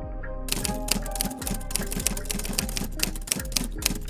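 Typewriter keystroke sound effect: a rapid run of clacks starting about half a second in, over soft background music.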